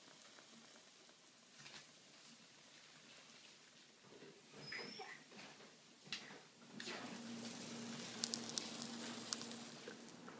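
Faint sizzle of a pancake frying in oil. It is followed by scattered knocks and clinks, then a steady low hum with a quick run of sharp clicks near the end.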